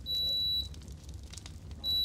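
High electronic beeps from a device being switched on by button presses: one steady beep of about half a second near the start, then a short one near the end.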